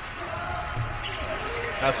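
Basketball court sound from a game broadcast: a ball bouncing on the hardwood, with a low thump a little under halfway through, and commentary resuming near the end.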